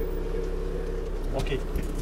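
Safari minibus engine running with a steady low hum, heard from inside the cabin.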